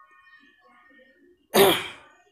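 A man's single short, loud cough about one and a half seconds in.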